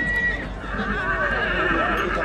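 Heavy draft stallion neighing: one quavering whinny of almost two seconds, starting about half a second in.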